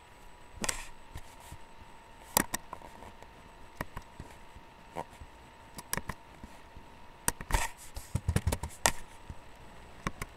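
Irregular sharp clicks and knocks, about a dozen scattered through, with a quick run of duller thumps near the end, over a faint steady electrical tone.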